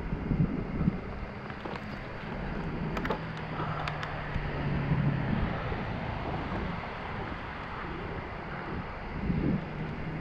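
Wind buffeting the microphone of a camera on a moving bicycle, a steady low rumble. A faint low hum runs from about a second in to about halfway, and a few light clicks come around the middle.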